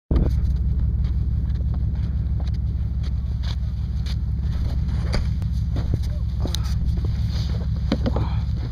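Steady low rumble of wind buffeting the camera's microphone, with scattered knocks and rubs from the camera being handled.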